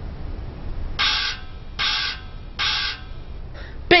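Three short, evenly spaced magical sound effects, each a bright shimmering zap under half a second long, over a low background hum. They mark pieces of the sandwiches vanishing.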